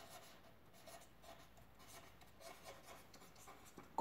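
Faint scratching of a pen writing on paper, in short irregular strokes as a word is written out.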